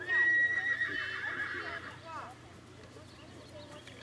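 A horse whinnies: one long, high, wavering call held for nearly two seconds, ending in a falling sweep.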